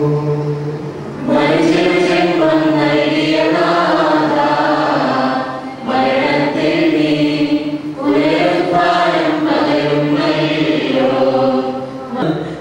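Group of voices singing a liturgical chant in long, sustained phrases that break briefly every few seconds, over a steady low drone.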